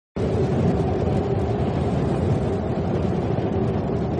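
Steady low cinematic rumble with a held mid-pitched tone, starting abruptly just after the beginning: the opening drone of an intro soundtrack.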